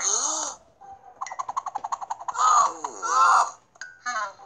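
Cartoon character voice effects of a wild possessed man crying out: a loud wavering cry at the start, a fast stuttering jabber about a second in, then two more loud cries near the end.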